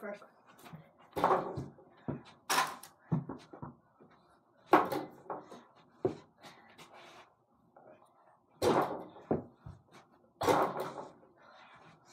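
A small ball knocking against an over-the-door mini basketball hoop and the door it hangs on: a series of separate thumps and rattles one to two seconds apart.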